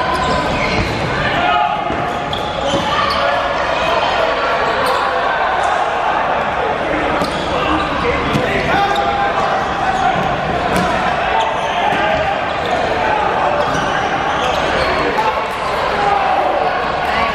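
Players shouting and calling to one another during a dodgeball rally, with dodgeballs bouncing and striking the hardwood floor in sharp knocks scattered through, all echoing in a gymnasium.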